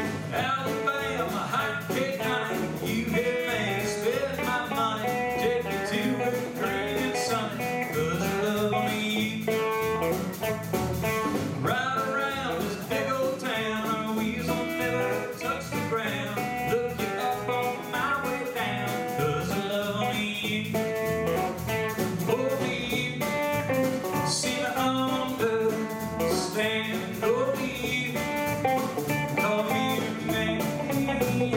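Live country band playing, with electric guitar and acoustic guitar over bass and drums. A voice comes in near the end.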